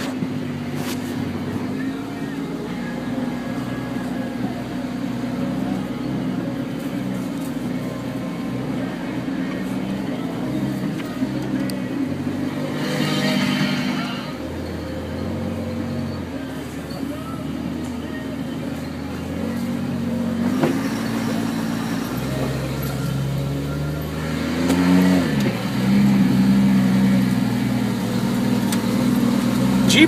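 Off-road vehicle's engine running at low speed as it crawls over a trail, its pitch stepping up and down with the throttle. It gets louder over the last few seconds.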